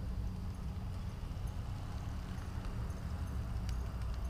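Steady low rumble of wind buffeting an action camera's microphone, with a few faint clicks near the end.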